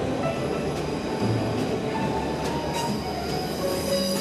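A Berlin S-Bahn electric commuter train passing at speed over an elevated viaduct: a steady, dense rush of wheel and rail noise, with thin high squealing tones from the wheels joining in the second half.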